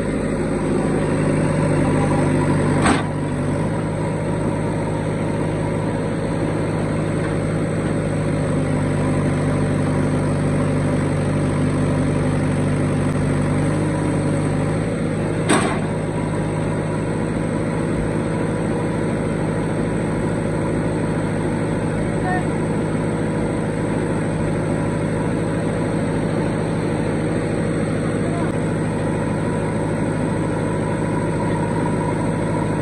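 Diesel engine of a JCB 3DX backhoe loader running steadily close by, its note shifting slightly about halfway through. Two short sharp knocks are heard, one about 3 seconds in and one about 15 seconds in.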